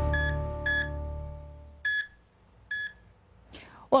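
The end of a TV news programme's electronic intro theme: held synth tones fade out while four short, evenly pitched electronic beeps sound like a heart monitor. A brief whoosh comes just before the end.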